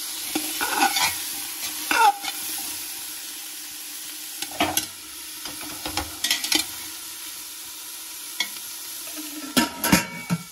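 Cauliflower frying in oil with a light sizzle in an aluminium pressure cooker while a metal slotted spoon stirs it, scraping and knocking against the pot every second or two. Near the end a few louder knocks as a lid is set on the pot.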